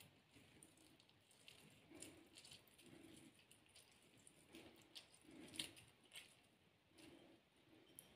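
Very faint squelching of half a lemon being twisted on a glass citrus reamer, in a series of short strokes with a few small clicks.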